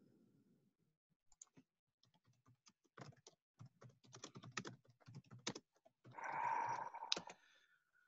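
Faint computer keyboard typing, a run of quick key clicks, followed near the end by a louder noise lasting about a second and a half.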